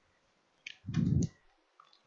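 A few quiet computer mouse clicks in quick succession a little over half a second in, with a brief low sound just after them.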